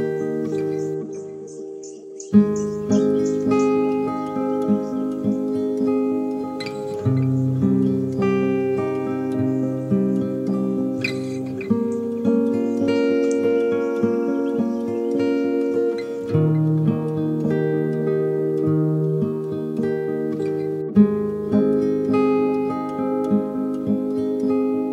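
Slow guitar music with echo: held chords that change about every four to five seconds. The sound thins out briefly near the start, then a sharp strum comes in about two seconds in.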